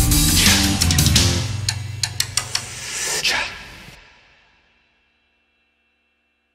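Background music with drums and guitar that winds down after a couple of seconds and fades out about four seconds in, leaving silence.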